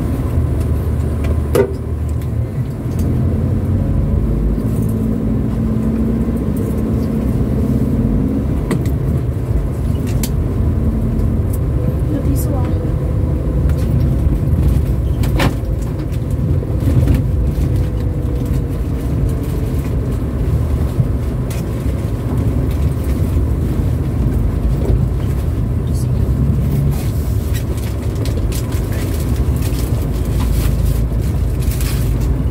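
Cabin sound of a 2007 Daihatsu Terios TX with a manual gearbox being driven slowly along narrow streets: its 1.5-litre four-cylinder engine and the tyres make a steady low drone. Scattered knocks and rattles come through as the car goes over the uneven road.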